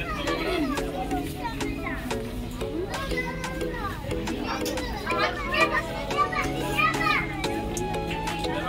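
Background music with a repeating pattern of held chords, and high children's voices calling and chattering over it, busier in the second half.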